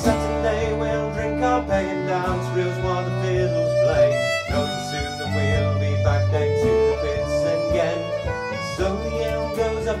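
Folk song played live on fiddle, strummed acoustic guitar and a second plucked string instrument, with the fiddle prominent. The third verse is being sung over it.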